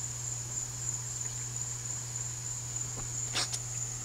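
A steady high-pitched whine over a low hum, with a few faint clicks about three and a half seconds in.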